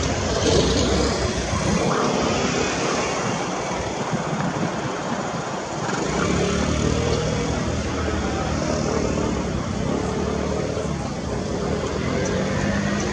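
Airbus A330-300 airliner's twin turbofan engines running at taxi power as it rolls past, a steady rumble with a faint hum in the middle pitches from about halfway.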